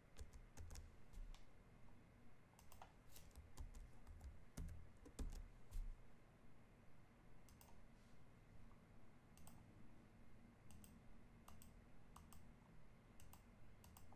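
Faint, irregular clicks of a computer mouse and keyboard, scattered through otherwise near-silent room tone.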